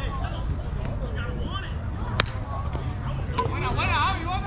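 Slowpitch softball bat hitting the ball: a single sharp crack about two seconds in, followed a little over a second later by a fainter knock, with players' voices and shouts around it over a steady low rumble.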